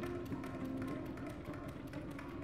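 Contemporary chamber music for flute, clarinet, violin, viola, cello and piano: held low notes sound under a scatter of dry, irregular taps.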